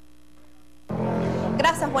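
A faint steady hum, then about a second in the sound cuts abruptly to a louder background of low steady droning tones as the broadcast switches to the field report's feed. A woman's voice starts near the end.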